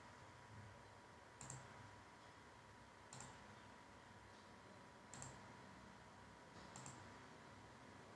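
Near silence broken by four faint computer mouse clicks, spaced about a second and a half to two seconds apart.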